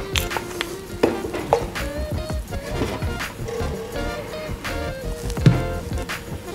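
Background music: a melody of held notes with a few sharp percussive hits.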